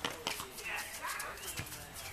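A few sharp thuds of a soccer ball being kicked and bouncing on a hard tennis court, with players calling out in between.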